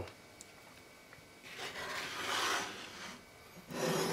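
Wooden cutting board scraping as it is slid across the kitchen countertop, in two stretches of rubbing: one from about a second and a half in, lasting over a second, and another starting near the end.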